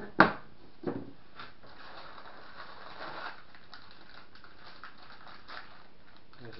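Foam packing insert being lifted out of a cardboard box: a sharp knock just after the start, a softer one about a second in, then light rustling and creaking of foam and packaging.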